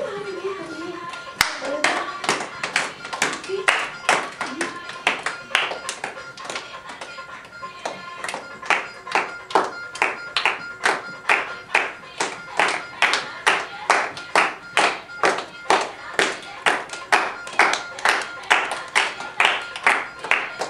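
A group clapping hands in a steady rhythm to keep the beat for Giddha, the Punjabi folk dance, about two claps a second. The claps grow sharper and more even in the second half.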